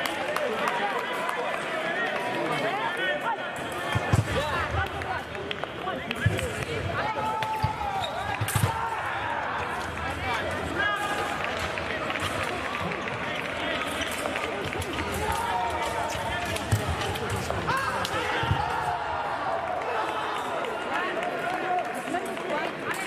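Footwork of two sabre fencers on the piste: scattered thumps and stamps of their feet as they advance and retreat, with several sharper stamps. Voices from the hall run underneath.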